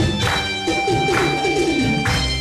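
Electronic keyboard playing a dance tune with held tones and a steady beat.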